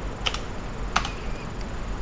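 A few sharp clicks of computer keyboard keys: two close together just after the start and one about a second in, over a low steady hum.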